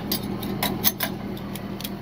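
About half a dozen sharp, irregular metal clicks and clinks from the hook and hardware of a wheel strap as it is fitted around a car's rear tire for towing.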